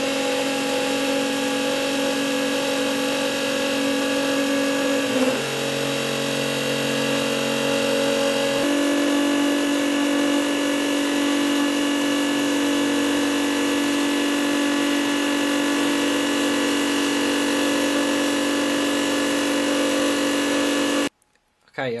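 Unimat 1 mini lathe's small 12,000 rpm DC motor running with a steady whine, spinning a Delrin rod in the chuck while the cutter faces off its end. The pitch shifts twice, about five and nine seconds in, and the motor cuts off about a second before the end.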